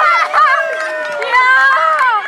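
Several children shouting and cheering at once in high, overlapping voices, celebrating a goal.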